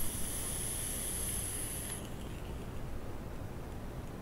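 A vape's rebuildable atomizer coil (twisted 26-gauge wire, about 0.12 ohm, fired at 42 watts) crackling and sizzling as the e-liquid vaporizes during a long draw. It is a steady high-pitched hiss that stops about two seconds in, leaving softer airy noise.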